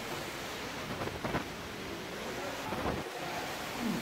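Steady rushing of falling water from a large indoor waterfall, with faint distant voices.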